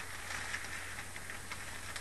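Room tone: a steady hiss with a low hum underneath, with no other distinct sound.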